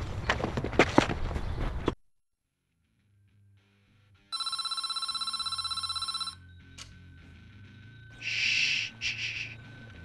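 A telephone rings once, a trilling electronic ring lasting about two seconds. Before it, a loud noisy stretch cuts off suddenly about two seconds in, leaving near silence until the ring.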